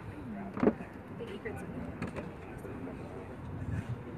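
Low chatter of passengers over the background noise of an open tour boat, with one short loud sound about half a second in.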